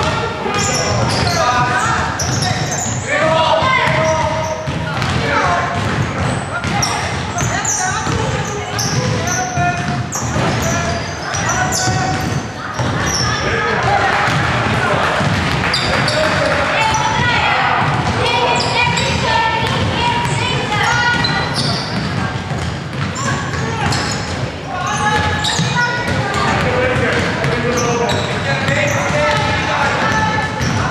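Basketball dribbled and bounced on a wooden sports-hall floor during play, with players' and spectators' voices calling out throughout.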